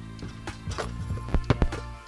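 Background music, with a basketball knocking off the backboard and rim and bouncing on tiled paving about five times, the knocks bunched about one and a half seconds in.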